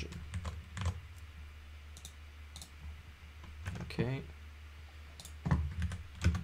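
Scattered single clicks of computer keys, about nine taps spread unevenly, over a steady low hum.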